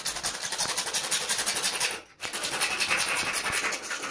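A hand file scraping the end of a white uPVC pipe fitting, a fast rasp in two runs with a short break about two seconds in.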